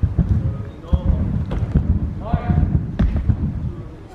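Someone bouncing on a trampoline: a run of irregular low thumps from the bed and the landings, with a short voice about two and a half seconds in.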